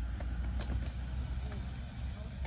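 Outdoor background: a steady low rumble, with faint distant voices and a few light clicks.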